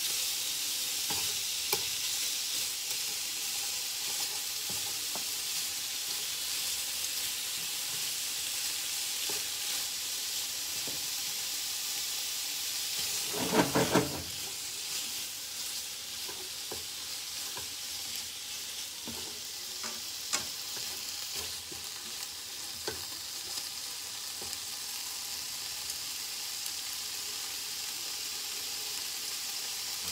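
Sliced pork sizzling steadily in oil in a frying pan while it is stirred and separated with chopsticks. Small clicks of the chopsticks on the pan are scattered throughout, and there is a short burst of louder knocks near the middle.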